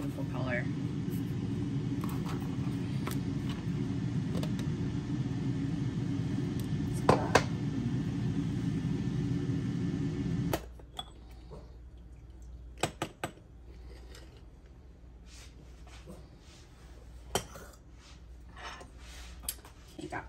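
Personal single-serve blender running steadily while blending strawberry milk, cutting off suddenly about ten seconds in. Then scattered light clicks and knocks as the cup is handled off the base.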